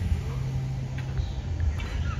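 Steady low hum over a low rumble, with a few faint short clicks.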